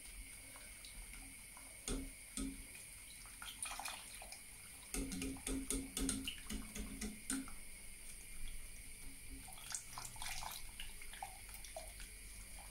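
A wire balloon whisk beating milk into a roux in a stainless steel saucepan. The liquid sloshes quietly, with many quick light clicks and scrapes of the wires against the pan, busiest about halfway through. The sauce is still thin and not yet thickened.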